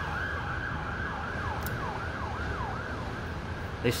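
Emergency vehicle siren sounding in quick repeated falling sweeps, about three a second, over a steady low city rumble.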